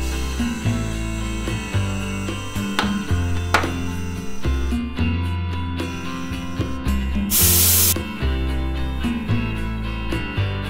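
Compressed air hissing from a compressor hose into the valve of a tubeless mountain bike tire, valve core out, to seat the bead, with a loud short burst of hiss a little after seven seconds in. Background guitar music plays throughout.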